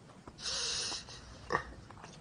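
A person's short hissing breath, then a brief snort a second later.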